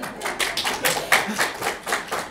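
Audience applause: many hands clapping in a quick, irregular patter.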